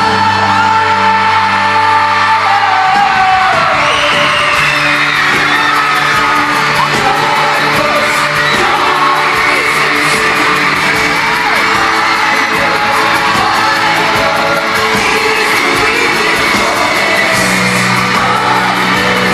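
Live pop boy-band performance heard from the arena stands: sung vocals over the band, with a held low chord that ends about three seconds in, under constant screaming from the crowd.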